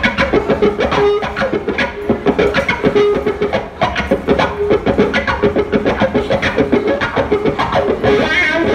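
Live band playing an instrumental opening with electric guitars, bass guitar and drums. A steady, driving drum beat runs under held guitar notes.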